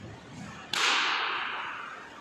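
A single sharp crack from a karate technique, the snap of the gi as a strike is thrown, about a third of the way in. It dies away over about a second in the gym's echo.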